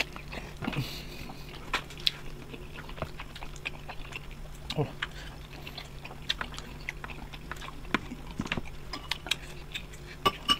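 Close-up eating sounds of people chewing grilled chicken: chewing, lip smacks and scattered small clicks, over a faint steady hum.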